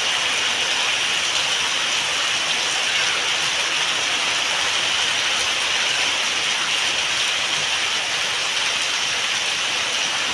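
Heavy rain falling steadily on a roof and concrete paving, with a stream of runoff pouring off the roof edge and splashing onto the wet ground.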